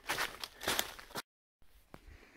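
Footsteps on thin snow over leaf litter, several irregular steps in the first second or so, broken off abruptly by a brief moment of total silence where the recording is cut.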